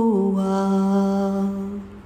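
A woman's voice chanting an Ismaili chogadia ginan, holding one long sung note that steps down slightly at the start and fades out near the end.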